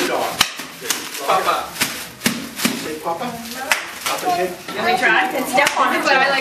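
Bubble wrap being twisted and squeezed by hand, its bubbles popping in irregular sharp pops, about one or two a second.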